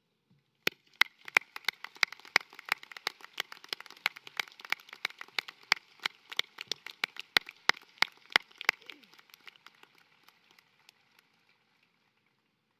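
Crowd applause: many separate hand claps in an irregular patter. It starts about a second in, then thins out and dies away near the end.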